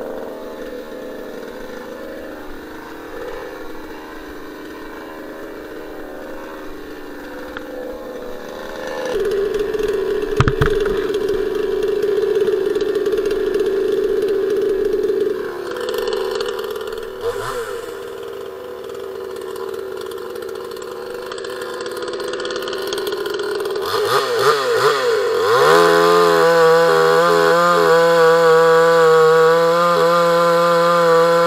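Demon CS 58T 55 cc two-stroke chainsaw running, louder for a stretch after about nine seconds, then revved up and down a few times. Near the end it is held at full throttle in a steady high note as it cuts into a fresh alder log.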